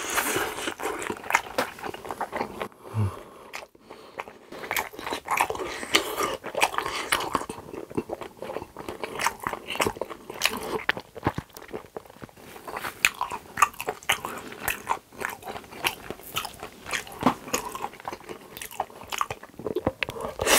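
Close-miked chewing of a mouthful of spaghetti in rose sauce: irregular wet smacks and clicks of the mouth and lips, going on without a break.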